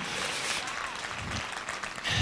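Congregation clapping their hands, a dense spatter of many claps with no single beat standing out.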